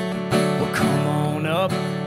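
A man singing with his own strummed acoustic guitar; after a brief guitar-only stretch, his voice comes back in with the song near the end.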